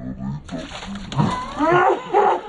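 A man lets out a drawn-out yell that rises and falls in pitch as very cold water is poured over his head, over a steady hiss of pouring, splashing water.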